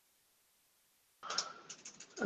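Near silence, then from just past a second in a few faint computer keyboard keystrokes.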